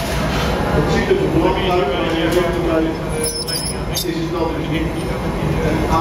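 Voices talking in the background over a steady noise of glass-workshop furnace and burner, with a brief light clink a little past three seconds in.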